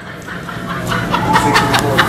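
Laughter: a man chuckling, faint at first and growing louder in the second half.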